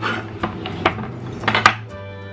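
A kitchen knife chopping whole carrots on a wooden cutting board: about five sharp knocks, unevenly spaced, with two close together near the end.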